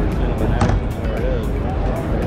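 Busy convention-hall background: music with a steady beat over the chatter of a crowd.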